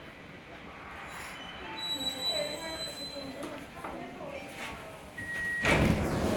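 Interior of a metro car standing at a station, with faint passenger voices. Near the end comes a short high beep, then a sudden loud rush of rail-car noise that keeps going.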